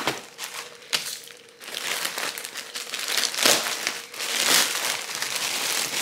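A plastic grocery bag crinkling and rustling in irregular bursts as it is handled and pulled open, with a sharp knock about a second in.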